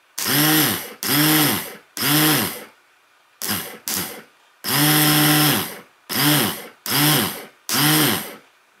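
A Kawasaki Balius electric starter motor, off the bike and run directly from jumper cables, whirs up and winds down nine times in quick on-off bursts, with two short blips a little past the middle and one longer run of over a second just after them. This starter is the one that runs heavy, with a gritty feel when turned by hand.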